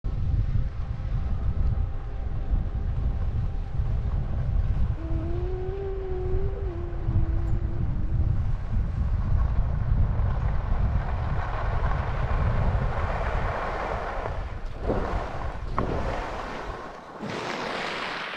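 Wind buffeting the microphone of a skier's camera during a downhill run, with the hiss of skis sliding and carving on groomed snow growing louder from about halfway through. Two short, sharper scrapes come near the end, and a brief held tone sounds about five seconds in.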